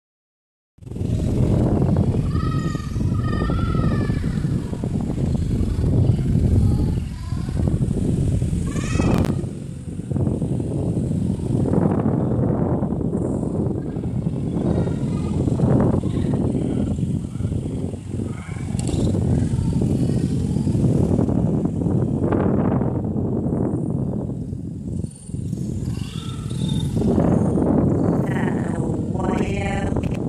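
Steady low rumble of wind on the microphone, with a few short animal calls over it: a group about two to four seconds in, one near nine seconds, and more near the end.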